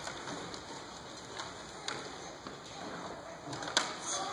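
Rustling and shuffling of children and adults moving about, with scattered small clicks and one sharp click near the end.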